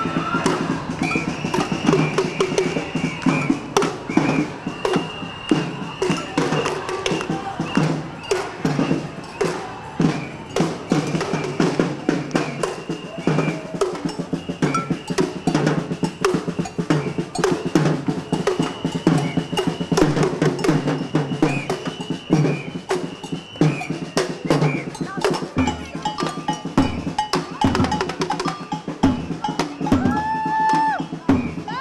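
A group of marching snare-type drums beaten with sticks, playing a fast, dense, continuous rhythm.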